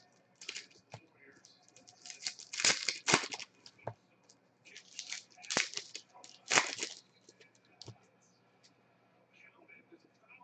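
Foil wrapper of a baseball card pack being torn open and crinkled, in several short, sharp rips over the first seven seconds.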